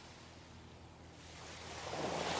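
Faint surf of small sea waves washing onto a sandy beach, a soft steady rush that grows a little louder near the end.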